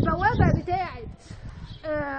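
A person's voice speaking for about a second. Near the end comes one long drawn-out vocal sound, falling slightly in pitch.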